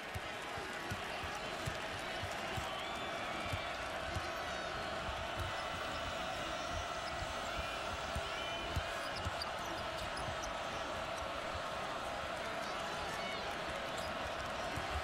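Basketball being dribbled on a hardwood court, a string of short low thuds, over the steady murmur of a large arena crowd.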